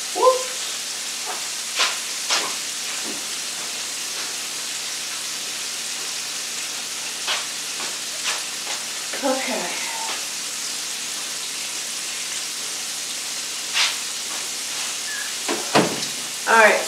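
Food frying in a skillet on an electric stove: a steady sizzling hiss, with a few sharp clicks now and then.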